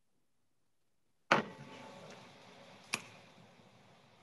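Near silence, broken about a second in by a sharp click as steady background room noise suddenly comes up, then a second sharp click about three seconds in.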